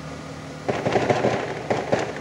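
Coolant flush and fill machine running with a steady hum. About two-thirds of a second in, it gives way to an irregular crackling, sputtering rush as coolant and air are drawn through the fill hose into the Fiat Siena's cooling system.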